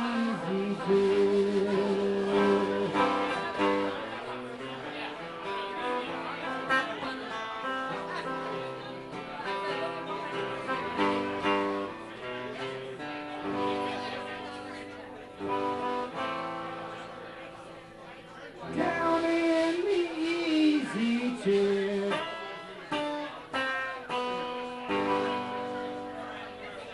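Live guitar music, a mostly instrumental stretch of a song, with a man's voice singing briefly about 19 seconds in.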